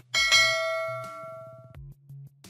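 A single bell-ding sound effect for a clicked notification-bell icon: struck once, ringing down for about a second and a half, then cut off.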